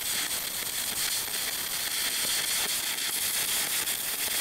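MIG welding arc on aluminum run on DC negative (reversed) polarity, an even crackling hiss. The wrong polarity gives no cleaning of the oxide layer, so the wire drops as globs that do not fuse to the plate.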